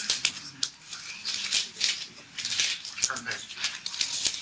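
Pages of thick steel design manuals being turned, irregular overlapping papery flicks and rustles as the AISC chart tables are paged through.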